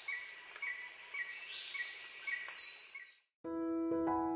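Nature ambience of birds chirping: a repeated short chirp about twice a second and several high falling whistles over a steady high hiss, fading out about three seconds in. Soft piano music starts just before the end.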